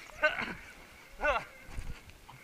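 A person's voice giving two short wordless cries, the second sliding down in pitch, with low thuds near the end.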